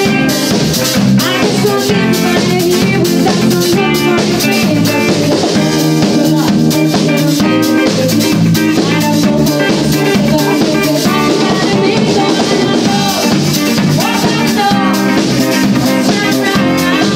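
Live disco-funk band playing: a drum kit keeping a steady dance beat with snare rimshots, over electric bass and electric guitar.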